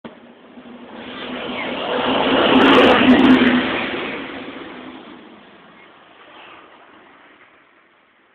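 A motor vehicle passing by: its engine and road noise grow louder over the first few seconds, peak about three seconds in, then fade away.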